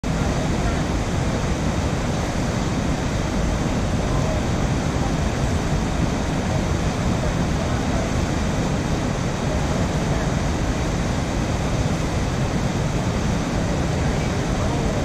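Steady rushing of a fast, heavy river current mixed with wind buffeting the microphone: an even noise, strongest in the low end, with no breaks.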